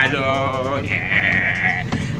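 A man's voice shouting a chant, ending in a long held call.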